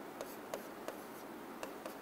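A pen writing on a board: a handful of faint taps and short scratches as the fraction 3/14 is written.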